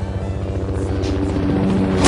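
A rapid, even chopping drone like a helicopter's rotor, growing steadily louder, over background music.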